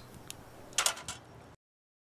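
Steel tongs scraping dross out of a crucible of molten aluminum, a short scrape about a second in. The sound cuts off abruptly to silence near the end.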